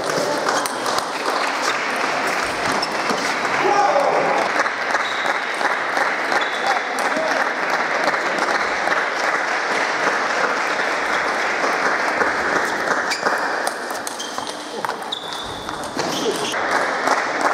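Busy table tennis hall: a steady hubbub of many voices mixed with the quick clicking of balls on bats and tables from several matches at once.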